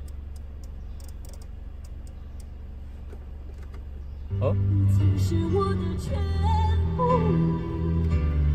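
A low steady hum with a few light clicks, then about four seconds in music starts playing loudly through the car's speakers. It is the factory NTG4.5 head unit's own audio, not the Android screen's: the AUX switching setting has not yet brought the Android sound through.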